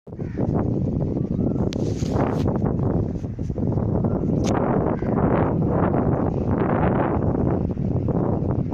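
Wind buffeting the phone's microphone: a loud, gusting low rumble throughout, with a few short clicks.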